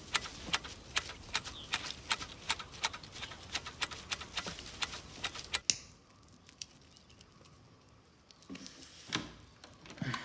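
Quick, irregular snapping clicks, several a second, of tea shoots being plucked by hand from tea bushes. They stop suddenly about six seconds in, leaving a quiet room with a few faint clicks and one sharp click near the end.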